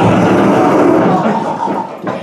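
Audience laughing at a punchline, starting suddenly and dying away near the end.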